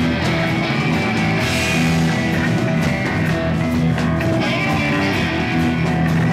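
Rock band playing live: electric guitars, bass and drum kit.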